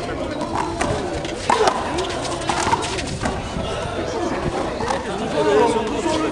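Big rubber handball being slapped by hand and bouncing off the concrete wall and floor: a few sharp hits in the first half, over indistinct chatter of onlookers' voices.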